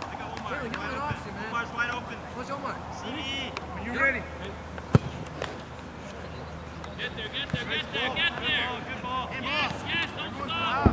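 Players' voices shouting and calling across a soccer field, with a single sharp knock of a soccer ball being kicked about halfway through.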